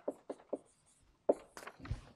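Chalk on a chalkboard: a handful of short taps and scratches as characters and brackets are written.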